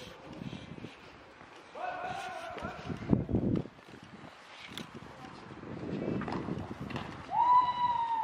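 Voices calling out in the open, with low rumbling bursts of noise on the microphone. A held call comes about two seconds in, and a long falling tone near the end is the loudest sound.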